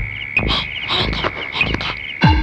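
Frogs croaking in short, irregular calls over a steady high tone.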